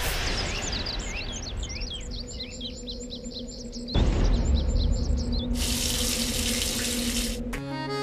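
Birds chirping in quick short calls for the first half, then running shower water, an even hiss for about two seconds that cuts off abruptly near the end, over a background music bed.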